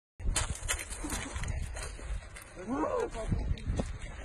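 Pebbles crunching and clacking under bare feet on a shingle beach, in irregular sharp clicks, with wind buffeting the microphone. A man's voice calls out briefly about two and a half seconds in.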